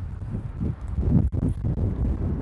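Wind buffeting the microphone outdoors: a steady low rumble that cuts out for an instant just past a second in.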